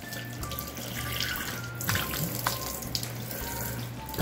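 Tap water running steadily into a sink while the face is being washed, with a couple of brief clicks near the middle.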